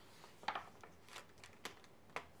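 A page of a large picture book being turned by hand: a few brief, faint paper rustles, the loudest about half a second in.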